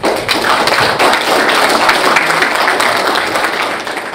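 Audience applauding: many hands clapping in a dense, steady clatter that starts suddenly at full strength.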